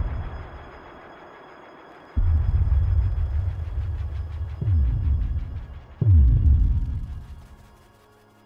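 Cinematic trailer-style bass booms: deep hits, each dropping sharply in pitch. A steady low rumble starts about two seconds in, and hits land at about four and a half and six seconds, then everything fades out near the end.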